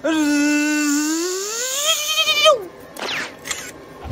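A person's voice holding one long note, steady at first, then rising in pitch with a wobble before it breaks off after about two and a half seconds. A few faint clicks follow near the end.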